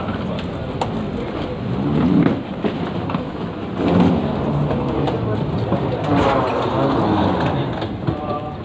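Steady hiss of indoor crowd and machine noise with indistinct voices coming and going, heard while riding an escalator.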